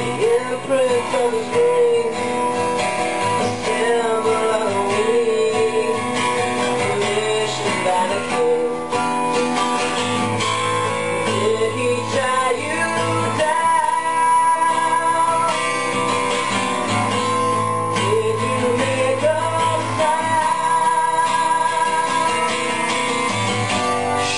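A song on acoustic guitar, strummed and picked, with a man singing a wavering melody over it.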